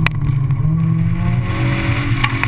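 Honda S2000's four-cylinder engine running hard through an autocross course, heard from the open cockpit with the top down. Its note wavers slightly under load, and a sharp click comes right at the start.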